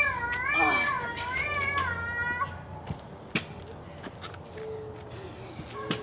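A child's high-pitched, wavering squeal, held for about two and a half seconds, followed by a few light clicks and knocks.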